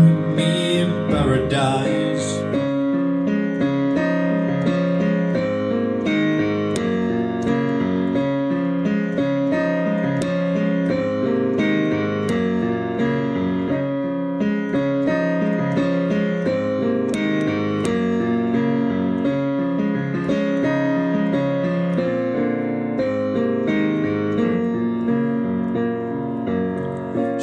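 Instrumental backing track: electric piano chords and melody with a steady pulse. A held sung note wavers and fades out in the first two seconds.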